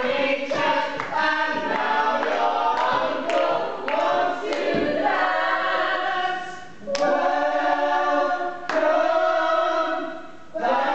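A group of voices singing a show tune together, with a few sharp hits among the phrases.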